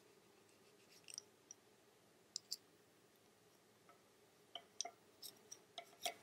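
Faint, scattered light clicks of wooden double-pointed knitting needles tapping against each other while stitches are knitted two together, more of them near the end, over near silence.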